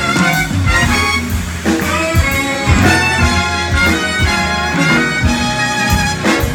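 Live big band playing an instrumental break with a swing feel: saxophones and brass over keyboard and a steady drum beat.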